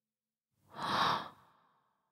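A person's single sigh: one breathy exhale lasting about half a second, near the middle.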